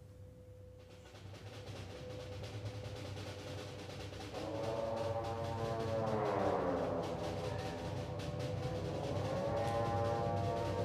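Concert band music begins very softly with a low drum roll that slowly swells. About four seconds in, the wind instruments enter, their notes sliding down and then back up.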